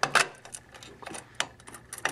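Metal clicks and clatter of a chrome-plated steel cash box drawer on a vending machine base being slid shut and open, with sharp clicks just after the start and about a second and a half in.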